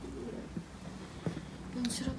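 Faint, indistinct voices: low murmured speech or humming, with no clear words.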